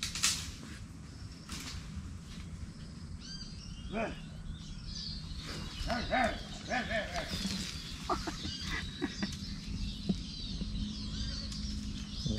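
Several wild birds chirping and calling from the surrounding trees, with short high chirps overlapping throughout. Two sharp clicks come in the first two seconds.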